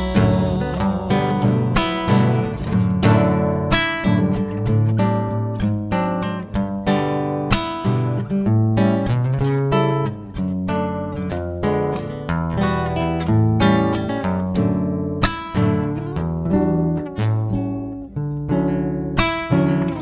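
Solo nylon-string classical guitar playing an instrumental interlude of a Cuyo tonada, plucked melody notes mixed with sharp rhythmic strums.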